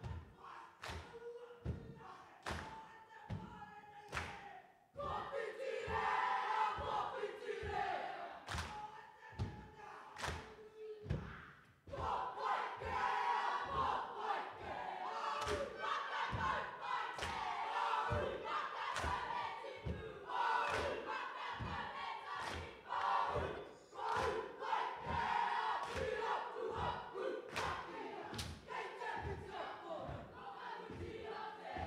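A large group of young people chanting and shouting in unison over a steady thumping beat, about two thumps a second. The voices come in loud about five seconds in, drop away briefly near twelve seconds, then carry on.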